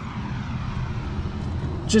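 Steady low rushing background noise with no clear pitch.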